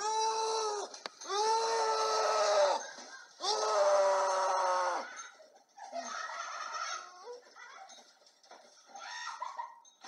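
A person screaming: three long, high cries, each held about a second and a half and dropping in pitch at its end, followed by shorter broken cries.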